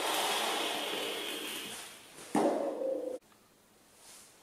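A long draw on a vape: about two seconds of airy hiss of air pulled through the atomizer, then a louder, partly voiced exhale of the vapour that cuts off suddenly a little after three seconds.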